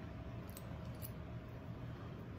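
Faint handling of a metal double-edge safety razor, with a couple of light clinks a little after half a second in, over low room noise.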